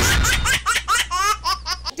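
Laughter sound effect on a logo sting: a sudden hit, then a quick run of short, high-pitched, rising 'ha' syllables, about six a second, over a low steady hum that stops near the end.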